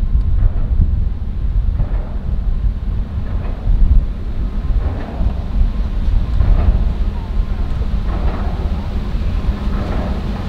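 Strong wind buffeting the microphone, a heavy, gusting low rumble, with a faint steady hum underneath.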